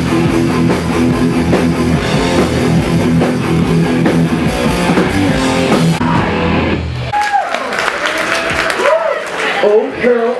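Live thrash metal band, distorted electric guitars, bass and drum kit playing loud, stopping abruptly about seven seconds in. Shouting voices follow the end of the song.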